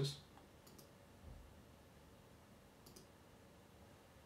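Near silence with room tone, broken by two faint, short clicks about two seconds apart.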